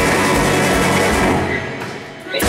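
Live rock band playing loud, with electric guitars, bass guitar and drum kit. About one and a half seconds in, the band stops for a break and the sound dies away.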